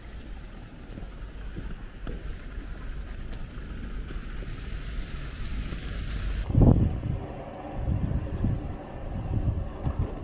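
Wind buffeting the camera microphone, a low rumbling that gusts hardest about two-thirds of the way through, with smaller gusts after.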